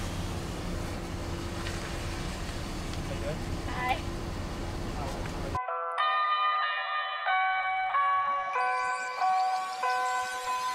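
Steady hum and rumble of a vehicle idling, heard from inside its cab. About five and a half seconds in it cuts off abruptly, and a bell-like music melody begins, its notes stepping up and down.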